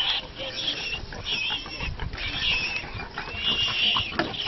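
Warthog squealing in distress, high wavering cries repeated about five times, while it is being attacked by a leopard.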